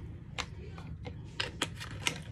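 A handful of light, sharp clicks and taps from handling a plastic bottle of green rubbing alcohol: one a little under half a second in, then three in quick succession in the second half.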